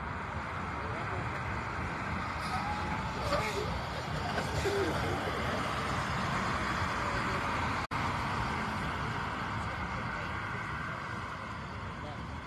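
Steady outdoor background noise with faint voices of people talking, cut by a brief dropout about eight seconds in.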